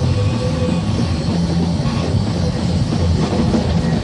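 A live band playing rock music, with the drum kit prominent.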